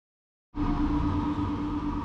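A moment of dead silence, then from about half a second in a steady mechanical hum with a constant pitch.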